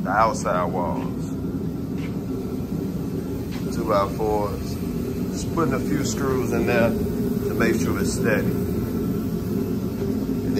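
A steady low mechanical hum runs throughout, with short bursts of an indistinct voice near the start, about four seconds in, and through the second half.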